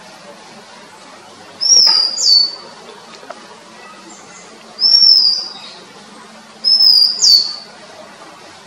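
Male Oriental magpie-robin singing: three short phrases of loud, high whistled notes a couple of seconds apart. Each phrase is one or two slurred notes that rise and then fall.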